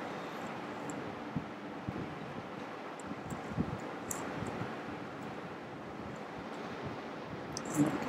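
Steady low background hiss of room and microphone noise, with a few faint short ticks.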